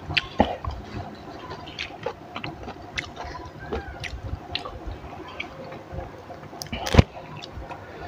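A person chewing and crunching fresh raw greens with chili dip, with scattered small clicks and rustling as the leafy stems are picked from the pile. One sharp knock sounds about seven seconds in.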